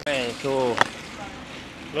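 A man's voice speaking briefly, ending in a sharp click, then a quieter stretch of steady street background noise.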